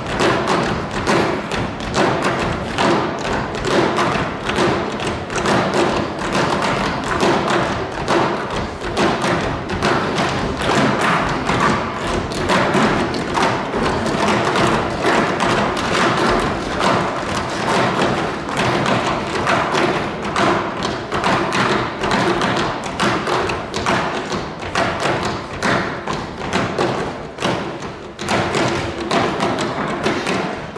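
Percussion ensemble playing a fast, dense rhythm of sharp stick strikes and thuds, with no letup.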